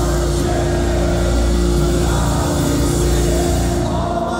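Metalcore band playing live through a club PA: distorted electric guitars, bass and drums, loud and dense with a sustained chord ringing through. Right at the end the bass and drums drop away.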